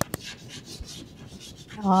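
Chalk scratching on a blackboard as words are written, in a run of short scratchy strokes after a sharp tap at the start.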